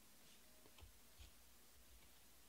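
Near silence, with a few faint clicks from glossy trading cards being handled and shuffled in the hands, the two clearest about a second in.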